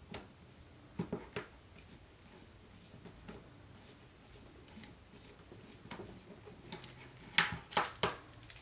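Scattered light clicks and taps of hard plastic RC car parts and a screwdriver being handled while a step screw is driven in to fit a suspension arm to the gearbox. A few taps come about a second in, and the loudest knocks come near the end.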